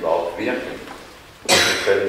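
A man's single short cough about one and a half seconds in, the loudest sound here, following a few spoken words.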